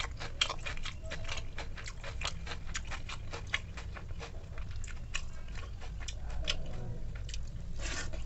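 Close-up mouth sounds of someone eating soaked rice (pakhala): wet chewing and lip-smacking. The clicks come thick and fast for the first few seconds, thin out, then bunch up again near the end.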